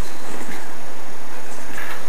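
Steady, loud hissing noise with no distinct events.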